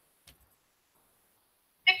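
Near silence on a video-call line, broken by one faint, short click about a quarter second in; speech starts right at the end.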